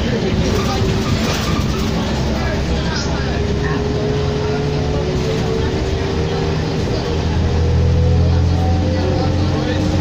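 Interior of a 2004 New Flyer D40LF diesel city bus under way: the engine and drivetrain run steadily, with a whine rising slowly in pitch. The low engine drone grows louder for a couple of seconds near the end.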